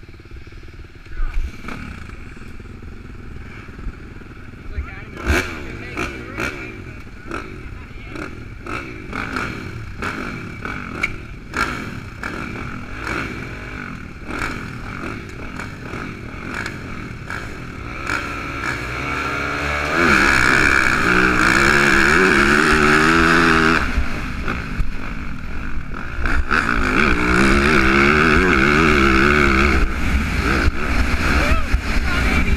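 Motocross bikes on the starting gate, the rider's Yamaha among them: engines running low and uneven with scattered clicks and clatter, then revved up hard and held at high revs as the start nears. The revs dip briefly, then rise again and stay high near the end as the bikes get under way.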